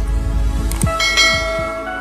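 Channel-intro music sting: a deep bass boom dying away under a few sharp clicks, then a bell-like chime that rings out about a second in and slowly fades.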